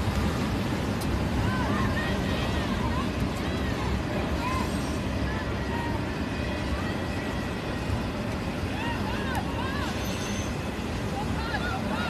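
Soccer-field ambience: distant players and spectators calling and chattering, none of it clear, over a steady low background noise.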